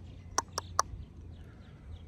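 A bird calling outdoors: three short, sharp notes in quick succession about half a second in, followed by fainter chirps over a low background rumble.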